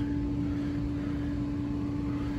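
Steady machine hum with one constant tone from the running pool heater equipment, while the heater sits in its ignition sequence with the hot surface igniter glowing and the burners not yet lit. There is no click from the gas valve yet, a sign of the long ignition delay behind the heater's ignition-failure fault.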